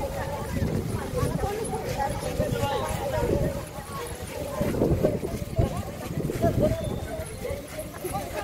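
Several women's voices together over the thud and shuffle of feet as a group dances round in a circle, with a few louder foot strokes in the second half.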